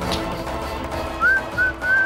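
Soft sustained background music. About a second in come three short, clear whistled notes, the first rising slightly, and these are louder than the music.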